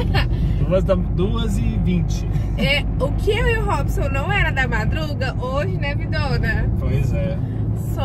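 Steady low rumble of a car driving, heard from inside the cabin, with people's voices over it throughout.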